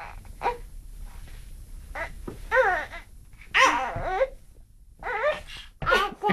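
A toddler babbling and making short strained vocal sounds in about five separate bursts while working his foot into a rubber boot, the longest and loudest burst just past the middle.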